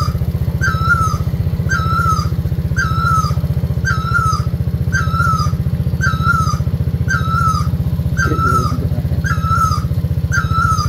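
Small motorcycle engine running steadily while riding a dirt track, its low, finely pulsed drone continuous. Over it a short, high call with a falling tail repeats evenly, a little more than once a second.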